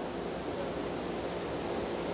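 Steady hiss of noise on a faulty remote audio feed while the call's sound is breaking up and the speaker cannot be heard.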